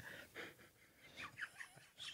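Near silence broken by a few faint breaths of stifled laughter, muffled by a hand held over the mouth.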